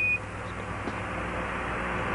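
A short high beep, a Quindar tone marking the end of the ground controller's radio transmission, right at the start. It is followed by a steady hiss with a low hum under it, slowly growing louder.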